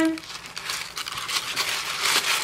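Tissue paper crinkling and rustling irregularly as it is handled and pulled apart.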